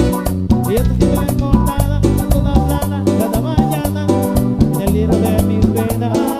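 Tropical dance band playing live, with a steady beat, a stepping bass line, percussion and melodic lead instruments.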